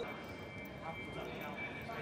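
Quiet railway station platform ambience: a faint steady high-pitched whine under a low hum of background noise, with a few light taps and clatters about a second in.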